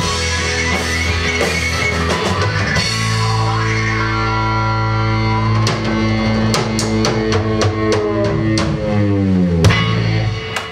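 Live rock band with electric guitars, bass, drums and violin playing the closing bars of a song. About three seconds in they settle on a long held chord while the drummer strikes the cymbals again and again; near the end the held notes slide downward and a final loud hit lands just before the end.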